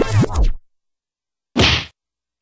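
Electronic dance music with falling bass sweeps cuts off abruptly about half a second in. After a second of dead silence comes a single short, noisy whack sound effect for a strike.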